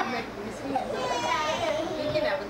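Indistinct voices chattering, high-pitched, with a baby's vocalizing among them.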